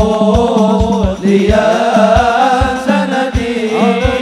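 Sholawat, an Islamic devotional song, sung in Arabic with a wavering melodic line, over a low drum beating steadily about twice a second.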